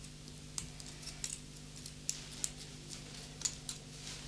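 Small scissors snipping embroidered cord: a few faint, sharp clicks spaced out over a low steady room hum.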